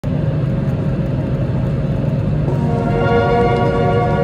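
Steady low rumble of an airliner in flight, heard from a window seat beside the wing-mounted jet engine. About halfway through, music with held chords comes in and grows louder.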